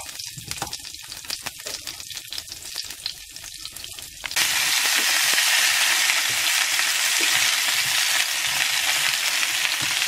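Rosemary sprigs crackling lightly in hot olive oil in a frying pan. About four seconds in, the sound jumps to a much louder, steady sizzle as halved small potatoes fry in the oil, turned with tongs.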